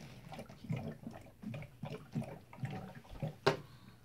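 Water glugging out of an upside-down plastic bottle into a humidifier's reservoir, air gulping up into the bottle in irregular pulses about twice a second, with a sharper click about three and a half seconds in. The glugging dies away near the end as the reservoir fills and the flow stops.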